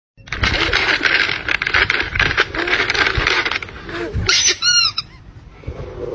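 Plastic treat bag crinkling loudly as it is handled, for about three and a half seconds, then a few short high-pitched squeaky calls.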